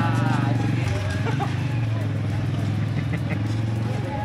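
An engine running at a steady idle close by, a constant low hum, with people's voices in the background.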